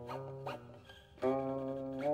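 Slow music on a plucked string instrument: single notes picked and left to ring, the loudest coming about a second and a quarter in and sustaining.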